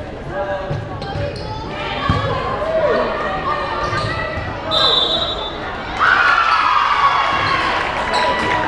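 Volleyball play in a gym hall: dull thuds of the ball amid scattered voices, a short shrill referee's whistle about five seconds in, then players and crowd cheering and shouting loudly for the last two seconds as the point ends.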